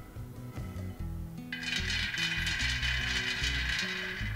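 Freshly roasted peanuts poured from a pan onto a metal plate: a dense rattling patter that starts about one and a half seconds in and runs on, over background music.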